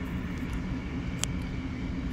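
Steady low background hum, with a single click just past halfway.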